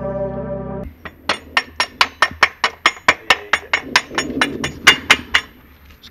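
Motorcycle rear axle being tapped through the swingarm and wheel hub with a hammer: a quick run of about twenty sharp metal taps, some four or five a second, that stops about a second before the end. Background music plays for the first second and cuts off abruptly.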